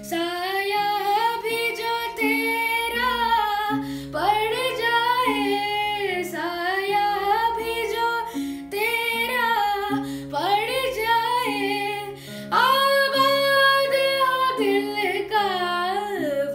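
A young boy singing a Hindi song in a high, unbroken voice, accompanying himself on a strummed acoustic guitar. The sung lines run almost without a break over steady guitar chords.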